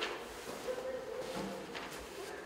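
Hall ambience with faint, indistinct voices and a few light clicks and knocks of paper and handling at the tables.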